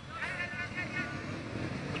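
Distant shouting voices over the low, steady running of many motorcycle engines.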